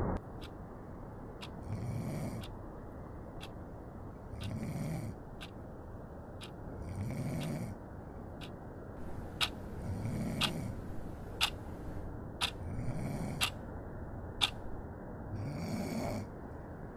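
A person snoring in slow, even breaths, six snores about two and a half to three seconds apart, over a steady low hiss. Sharp little clicks are scattered between the snores.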